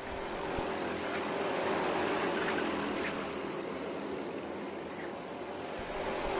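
Engines of a pack of racing karts passing on the circuit, swelling to a peak about two seconds in and then easing off.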